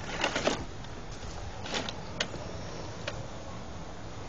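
Toy ride-on quad rolling along a concrete sidewalk: its plastic wheels rattle steadily, with a cluster of sharp clicks and knocks at the start and single clicks about two and three seconds in.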